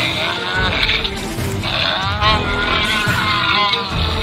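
A Jurassic World Roar Attack Ankylosaurus 'Bumpy' toy figure plays its electronic dinosaur sounds when pressed on the back: several bleating, grunting calls that slide up and down in pitch, over background music.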